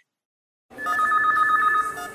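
Silence, then about three-quarters of a second in, an electronic telephone ring: two steady tones trilling rapidly together for just over a second.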